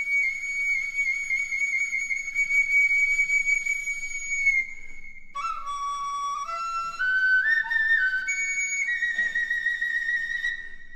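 Dizi (Chinese bamboo flute) playing solo: a long high note wavering with an ornament, a brief break about halfway through, then a phrase that climbs note by note from a lower pitch and settles on a held note near the end.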